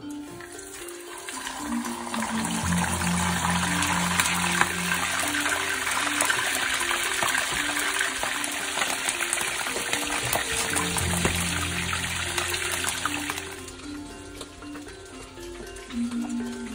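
A whole moonfish frying in hot oil in a shallow pan: a loud, steady sizzle thick with crackling pops. It builds over the first couple of seconds as the fish goes in and dies down near the end.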